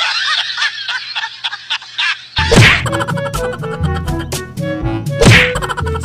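A high-pitched laughter sound effect that cuts off about two seconds in. Background music with a bass line then starts, hit by two loud whack sound effects about three seconds apart.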